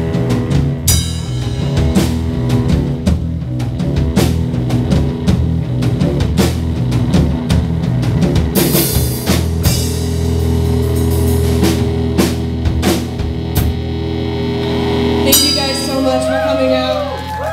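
Rock band playing live: distorted electric guitars, bass guitar and a drum kit with frequent drum hits and cymbal crashes. From about ten seconds in, a low guitar-and-bass chord is held and rings under the drums as the song draws to a close.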